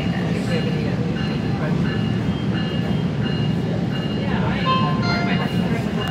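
Steady low rumble of a SMART diesel multiple-unit commuter train heard from inside the passenger car as it runs along the track, with faint voices about four to five seconds in.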